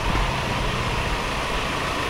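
A vehicle engine idling steadily in a covered concrete parking garage.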